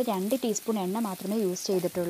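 Sliced onions sizzling in oil in a frying pan, stirred with a wooden spatula. A voice talks over it and is louder than the frying.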